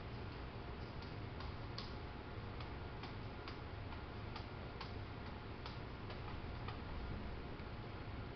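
Faint, unevenly spaced light ticks, roughly two a second, of a small paintbrush tapping and dabbing on canvas, over a steady low room hum.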